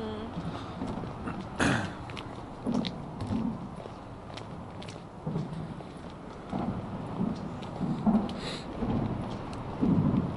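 Irregular dull thuds and rumbling from vehicles crossing a concrete road overpass overhead, one every second or so, the loudest about two seconds in.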